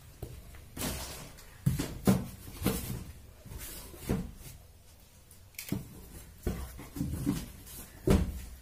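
A run of irregular soft knocks and thumps, about ten in all, spaced unevenly with short gaps between them.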